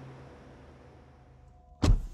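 Faint steady hiss of a very quiet room, then a single short, loud thud near the end.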